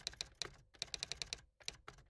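Keyboard typing sound effect: quick, irregular keystroke clicks in short bursts.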